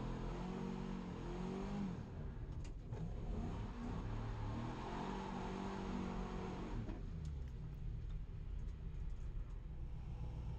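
Nissan 240SX drift car's engine heard from inside the cabin, revving up and down several times as the car rolls along, then settling to a lower, steadier note for the last few seconds.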